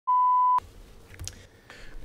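A single electronic beep: one steady tone lasting about half a second, cutting off sharply. It is followed by faint room noise with a few small clicks.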